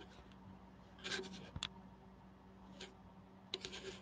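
Faint scraping and rustling with one sharp click about one and a half seconds in, from a webcam being shifted about on a diamond painting canvas, over a low steady hum.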